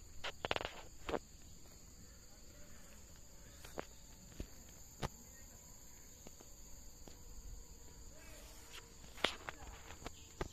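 A steady high-pitched insect drone, with scattered crunches and rustles of footsteps through plantation undergrowth, a cluster of them about half a second in and again near the end.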